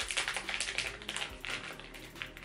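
Plastic packaging being handled, a quick run of small crinkles, crackles and taps.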